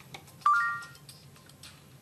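Samsung Galaxy S3 voice assistant giving one short rising electronic chime about half a second in, acknowledging a spoken command.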